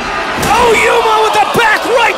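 A wrestler's senton from the top rope landing on a body draped over a steel folding chair: a sharp slam of body and steel about a second and a half in, amid loud shouting.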